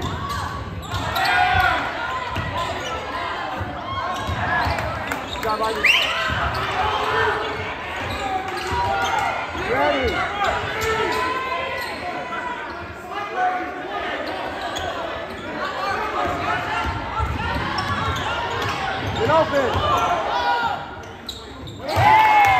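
Live girls' high school basketball play in a large, echoing gym: a ball dribbling on the hardwood, sneakers squeaking, and players, coaches and spectators calling out.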